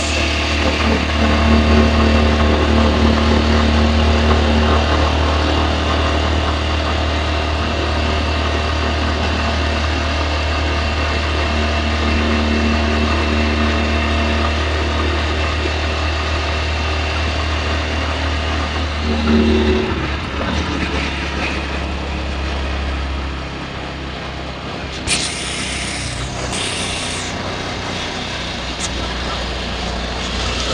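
Engine and road noise of a moving vehicle heard from inside the cabin: a steady low rumble that eases off after about twenty seconds, with two short bursts of hiss a few seconds later.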